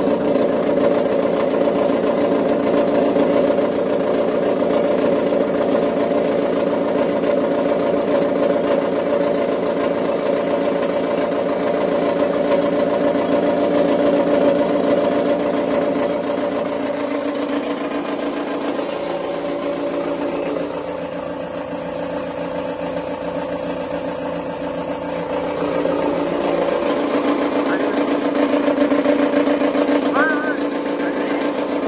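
Red chilli cutting machine running steadily with a dense mechanical hum of several tones while it cuts dried red chillies. The sound thins and drops a little in level from about 18 to 26 seconds in, then fills out again.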